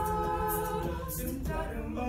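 A mixed-voice a cappella group singing wordless sustained chords, the harmony shifting to a new chord about a second and a half in.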